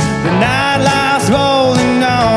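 A country band playing live, with guitars and drums under a melody line that slides up and down in pitch.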